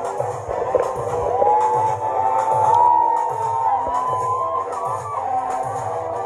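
Live Tigrinya dance music played loud: a steady low beat about twice a second under a long held melody line that bends up and down in pitch, with faint crowd noise beneath.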